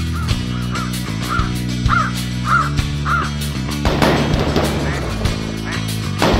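Crows cawing, about six calls at roughly half-second intervals, over background music with a steady bass line. The calls stop after about three seconds, and about four seconds in a sudden noisy burst with a long tail rises over the music.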